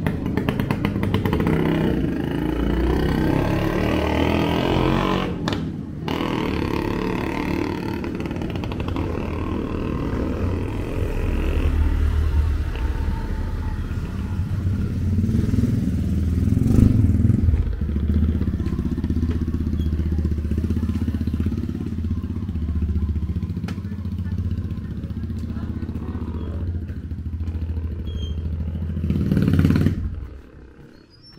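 Motorcycle engine of a motorcycle-sidecar tricycle running close by, a steady low drone throughout.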